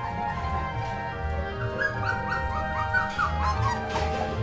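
Akita puppy whimpering in a run of short, high, rising whines from a little before halfway through: the nervous whining of a young puppy tense on an unfamiliar soft bed.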